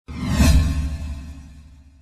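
Logo-animation sound effect: a whoosh over a deep boom that swells in the first half second, then fades out over the next two seconds.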